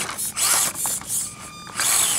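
SCX24 micro RC crawler's small electric motor and plastic gears running in several short, jerky bursts of throttle as it climbs over rock, with gear chatter and a brief steady whine past the middle. The throttle is jumpy because the motor wiring was messed up and the controls now run backwards.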